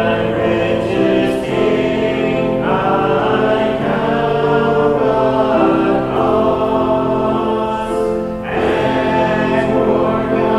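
A church congregation singing a slow hymn, men's and women's voices together, each note held a second or more, with a short breath between lines near the end.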